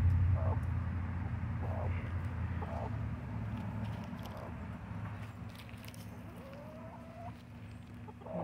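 Chickens, a Cochin hen and a Silkie rooster, give a few soft, short clucks and one rising call near the end. A low hum underneath fades away over the first few seconds.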